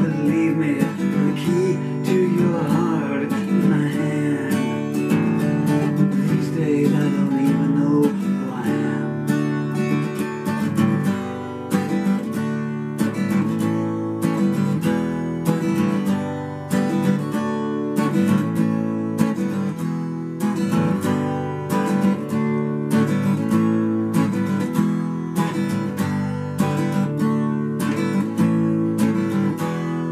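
Acoustic guitar strummed in a steady, repeating beat-beat-beat-beat riff, played on as an instrumental after the sung verses.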